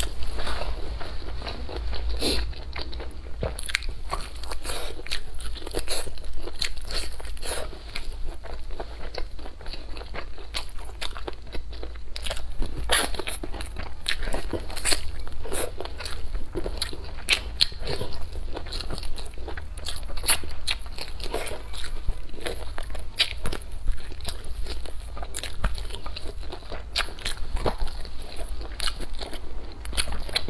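Close-miked biting and chewing of fried pork ribs: a steady stream of short, irregular clicks and crunches from the mouth and food.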